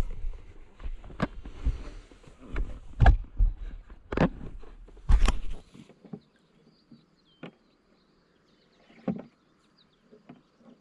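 Wind and handling rumble on the microphone with several sharp knocks through the first half. It then drops suddenly to a quiet pasture with faint bird chirps and a couple of soft knocks as a pipe is handled at a concrete water tank.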